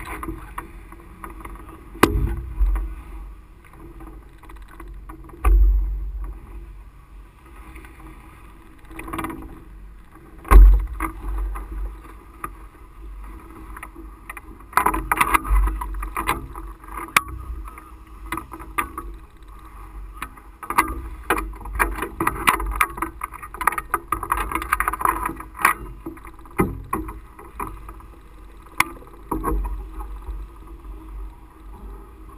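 Wind buffeting the mast-top camera's microphone in low gusts, the strongest about ten seconds in. Through it come frequent clicks and rustling of the nylon parachute wing being gathered, thickest in the second half.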